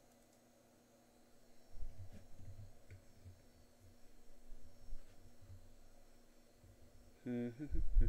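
Irregular low, muffled rumbles of movement close to the microphone for a few seconds, then a short burst of a man's voice near the end.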